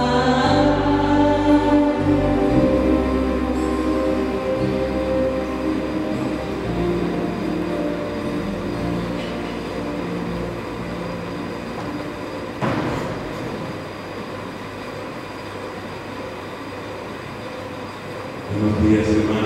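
Electronic keyboard playing soft sustained chords over low bass notes as the singing ends in the first couple of seconds, the chords slowly growing quieter. A single knock about two-thirds of the way through.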